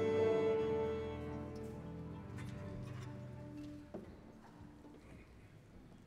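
An orchestra, strings prominent, holding a sustained chord that dies away over about four seconds. A single soft knock sounds just before it ends, then only faint hall room tone remains.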